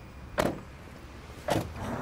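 Two car doors of a Nissan Cube shutting with a thud, about half a second in and again about a second later.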